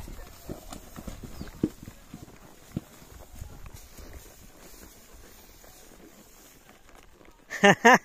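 Horses walking on a muddy track: soft, irregular hoof thuds in the first few seconds that then fade into quiet. A man's voice breaks in loudly near the end.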